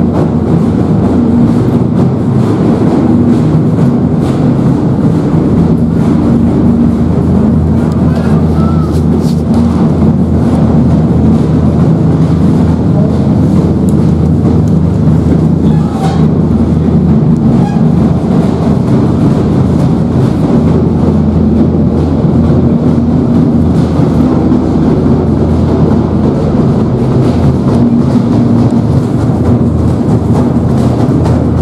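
Loud, unbroken din of a Hindu temple aarti, with drums and bells beaten steadily and voices mixed in.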